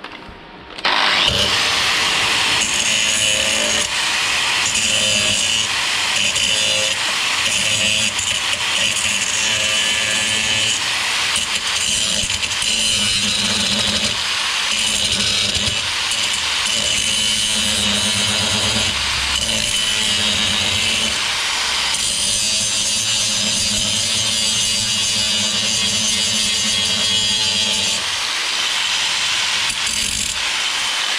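Angle grinder starting up and grinding down weld remnants on a car's steel chassis rail, the disc running steadily under load with a high whine and hiss.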